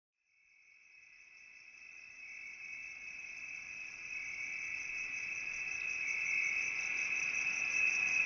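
Night-time cricket chirring: a steady, high, finely pulsing trill that fades in slowly from silence and grows louder.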